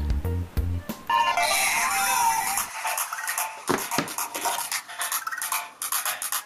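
About a second of full, bass-heavy music cuts off, and a song then plays thinly with no bass through the small built-in Bluetooth speaker of an LED fidget spinner.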